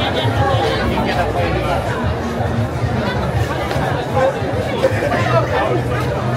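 Lively crowd chatter, many voices talking at once, over music with a steady bass line.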